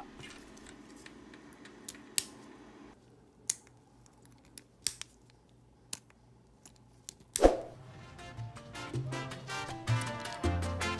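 A few sharp, separate plastic clicks from a 3D-printed two-touch side-release buckle as its buttons are pressed to release it and the halves are snapped back together. About seven seconds in, a louder hit comes as background music with a beat starts.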